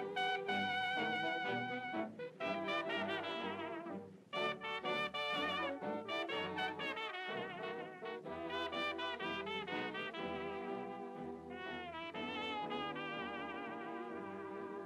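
1930s jazz-era song playing as background music, with a brass-led melody over a walking bass line.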